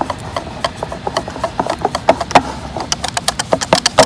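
Metal wire whisk beating a thick cornflour-and-water batter in a plastic bowl: quick, irregular clicks and taps of the wires against the bowl, coming faster near the end.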